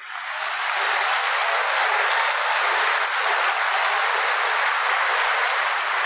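Audience applauding, swelling up over the first second and then holding steady.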